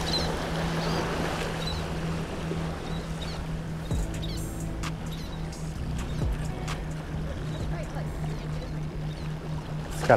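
Small waves washing against jetty rocks, a steady rushing of water, under a constant low hum.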